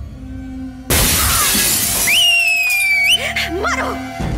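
Glass shattering in a sudden, loud crash about a second in, a fight-scene sound effect, over the dramatic film score, which carries on with a held, slightly falling synth tone.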